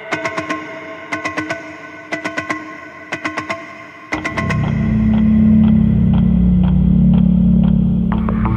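Cinematic trailer sound-design pulse sequence: rapid synthetic ticks in quick clusters over faint sustained tones, then about four seconds in a loud, deep bass drone enters and holds, with light ticks pulsing on top.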